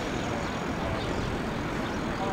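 Steady outdoor background noise, a low rumble and hiss with no distinct events.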